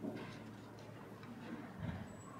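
Faint light clicks and handling sounds of a priest's hands at the altar, working the missal's pages beside the chalice, with a soft thump near the end. A low hum left over from the music dies away about a second in.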